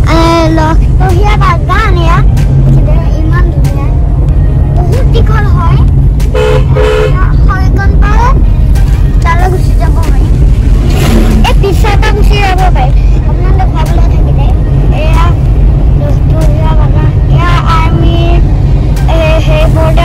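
Steady low rumble of road and engine noise inside a moving Nissan Magnite's cabin, with two short car-horn toots about six and a half seconds in. Voices talk over it now and then.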